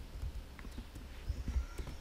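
Computer keyboard keys clicking a few times, scattered and unevenly spaced, over a low steady rumble.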